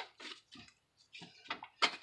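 Gloved hands mashing boudin stuffing into a pork chop on a plate: quiet, scattered soft clicks and squishes, with sharper clicks about one and a half seconds in and near the end.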